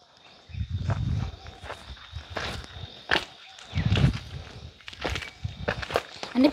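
Footsteps crunching on stony, gravelly ground as people walk along a rocky path, with two spells of low rumble about a second in and around four seconds in.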